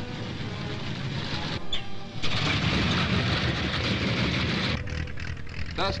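Aircraft piston engines running, heard as a dense, steady noise on an old film soundtrack. It gets louder about two seconds in and drops back near the end.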